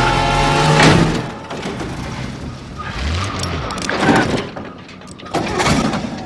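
Film soundtrack: a music score fades out about a second in, then a pickup truck's engine runs as it drives along a rough dirt road, with several sharp knocks.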